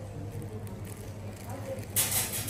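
Shop ambience: a steady low hum, with faint voices in the background.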